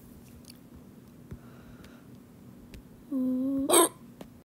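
Faint ticks and scratches of drawing on a tablet screen. About three seconds in comes a short, steady voiced sound of about half a second, cut off by a loud, sharp burst.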